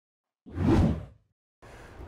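A single whoosh sound effect of an animated logo intro, swelling and fading in under a second about half a second in. Faint room hiss comes in shortly before the end.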